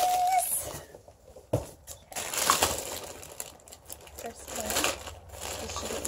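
Clear plastic bag crinkling in irregular spells as it is handled and opened.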